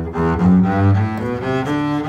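Double bass played with the bow, moving through a series of notes and settling on a long held note near the end.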